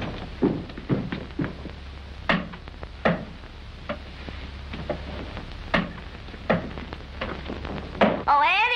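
Heavy footsteps climbing wooden stairs: irregular thuds about two a second, some much louder than others, over a steady low hum in the soundtrack.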